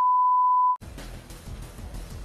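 A steady, single-pitched 1 kHz test-tone beep of the kind played with broadcast colour bars, cutting off abruptly a little under a second in. A fainter, noisy hiss follows.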